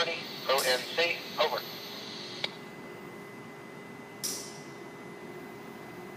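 Railroad scanner radio: a short voice transmission in the first second and a half ends with a click. A faint steady hum with a thin high tone follows, broken by a short burst of hiss about four seconds in.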